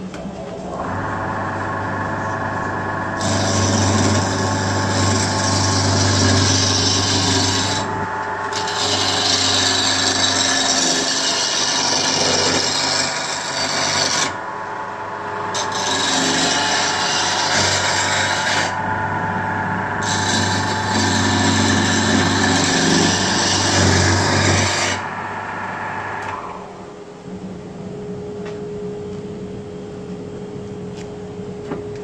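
A wood lathe's motor starts up with a steady hum, then a gouge cuts into a rough log blank spinning on it, a loud scraping of wood in several long passes broken by short pauses as the tool is lifted. Near the end the cutting stops and the lathe is switched off and runs down.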